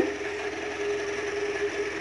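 A steady mechanical hum with a constant tone.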